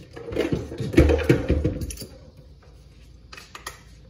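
Handling noise close to the microphone: clattering and knocking for about two seconds, then a few light clicks.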